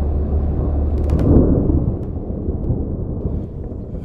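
Thunder-like rumbling sound effect under an animated title: a deep steady rumble that swells about a second and a half in and eases toward the end, with a few brief crackles about a second in.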